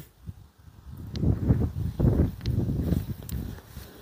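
Soft footsteps on grass with rustling, a run of low thuds starting about a second in.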